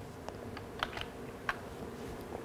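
Computer keyboard keys pressed lightly about five times over a second and a half, over a faint steady hum.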